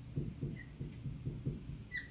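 Dry-erase marker writing on a whiteboard: soft scratchy strokes, with a brief high squeak about halfway through and another near the end.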